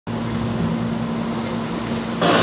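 A steady low hum with a constant hiss over it, an even machine-like background drone.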